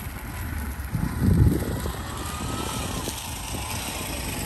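Engine of a three-wheeled auto-rickshaw driving past, as a low steady rumble that swells briefly about a second and a half in.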